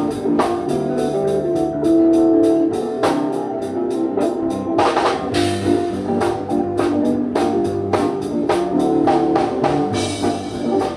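Live rock band playing an instrumental passage: a drum kit keeps a steady beat under electric guitar and held chords, with a cymbal crash about five seconds in.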